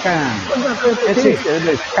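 Men speaking Greek over an online call, with a steady hiss beneath the voices.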